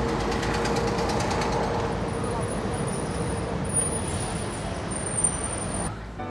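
A car engine running under steady street traffic noise, heard as a continuous even hum.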